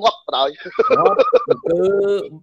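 Speech only: a man talking, with some drawn-out syllables.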